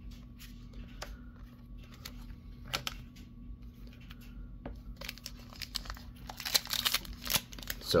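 Trading cards tapping and sliding as they are handled and set down. From about five seconds in, the foil wrapper of a Pokémon booster pack crinkles densely as it is picked up and opened.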